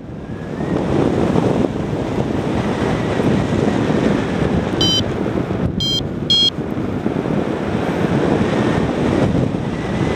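Steady wind noise buffeting the microphone of a paraglider in flight. About halfway through come three short, high electronic beeps, the kind a flight variometer gives when the glider is climbing in lift.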